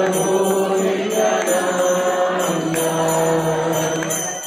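A man chanting a devotional mantra into a microphone and over loudspeakers, a slow melody of long held notes that shift in pitch every second or so.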